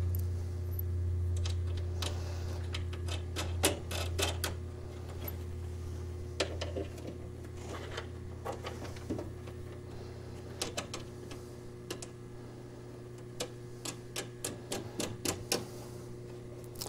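Small metal clicks and taps of carriage bolts and wing nuts being fitted and tightened by hand on a jukebox's wooden rear cover, scattered at first and coming several a second near the end. A low hum runs under the first half.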